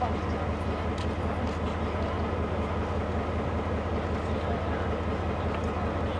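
Diesel locomotive idling while standing still: a steady, low, evenly pulsing engine throb.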